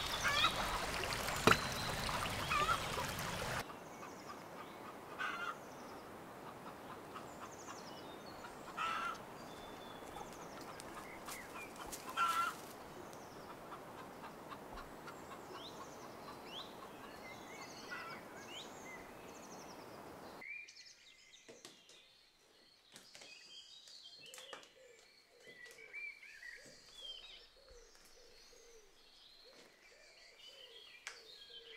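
Water pouring and trickling for the first few seconds, then birds singing and calling for the rest, with a few sharp knocks. The steady background hiss drops away about two-thirds of the way in while the bird calls go on.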